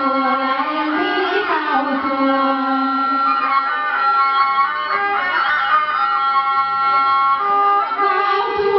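Instrumental music between sung verses: a melody of long held notes over string accompaniment.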